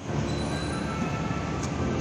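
Mercedes-Benz intercity coach standing close by, making a steady mechanical drone with a faint high whine through it, as of the bus idling at its bay.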